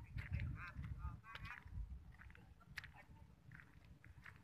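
Faint, wavering bird calls, several short repeated cries in the first two seconds and a few more later, over a low rumble of wind on the microphone.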